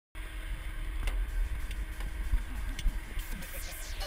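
Wind rumbling and buffeting on a helmet-mounted action camera's microphone, unsteady and low, with a few faint clicks and faint distant voices in the second half.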